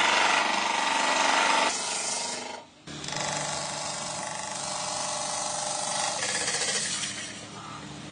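Wooden disc spinning on a belt-driven wood lathe with a hand-held chisel cutting into it: a loud, rough scraping cut. It breaks off briefly a little under three seconds in, then resumes steadier and fades near the end.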